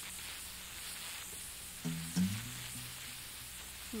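Steady hiss from an old tape recording of a radio broadcast, with a brief low pitched sound about halfway through.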